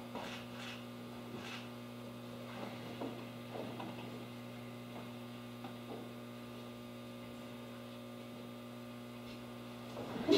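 Steady low electrical mains hum, with a few faint scattered taps in the first few seconds.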